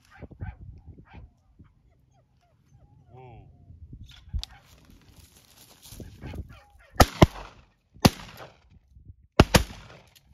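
A run of loud, sharp bangs: two close together about seven seconds in, one a second later, and another close pair near the end. A faint wavering call is heard a few seconds in.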